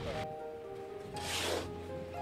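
Background music with long held tones. About a second in comes one short scraping hiss, a shovel cutting into and tossing loose sand.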